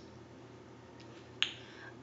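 Quiet room tone broken by a faint tick about a second in and a single short, sharp click about a second and a half in.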